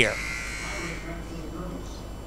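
Low gym ambience: faint, indistinct crowd voices over a steady electrical buzz, with the tail of the commentator's word at the very start.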